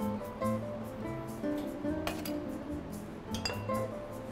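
Light metal clinks of a steel jigger against a cocktail shaker tin as syrup is measured and poured, a few separate clinks with the sharpest about two seconds in and near the end, over background music.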